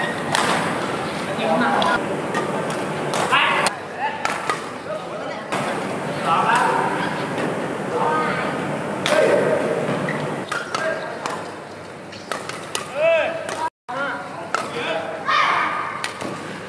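Badminton rackets striking a shuttlecock again and again in a rally, each hit a sharp crack, with players' voices calling out between strokes.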